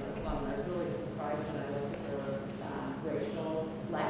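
Indistinct conversation between people talking away from the microphone, over a steady low hum.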